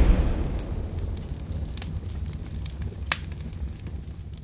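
Tail of an explosion sound effect on a flaming title animation: a low rumble with scattered crackles that slowly dies away, with one sharp pop about three seconds in.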